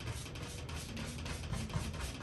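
Wide bristle brush dragged in upward strokes across wet oil paint on canvas: a quiet, scratchy rubbing with many fine ticks from the bristles.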